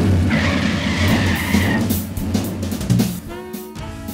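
Stock car engine running loud and low as the car pulls away, with a high tyre squeal from about a third of a second in to nearly two seconds. About three seconds in it gives way to a live jazz combo: saxophone and upright bass.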